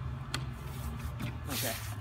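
Handling noise from a folding camp cot: a sharp click from its metal frame as it is worked by hand, then a brief rustling hiss near the end as the fabric is handled.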